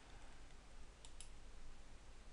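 Two quick computer mouse clicks about a second in, over faint hiss and a low hum.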